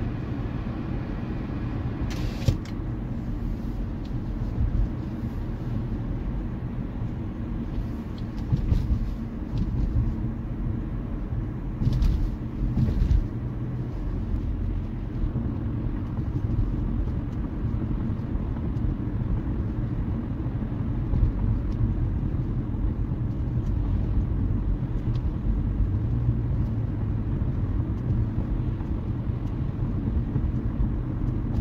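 Car driving along a road, heard from inside the cabin: a steady low rumble of engine and tyre noise, with a few brief knocks about two, eight and twelve seconds in.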